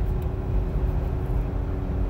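Jeep Gladiator's 3.6-litre V6 working at about 3,600 rpm under the load of a heavy trailer, heard inside the cab at highway speed. It makes a steady hum over a low rumble of road and wind noise.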